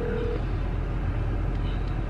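Steady road and engine noise of a car heard from inside the cabin, a low even rumble with no sudden events.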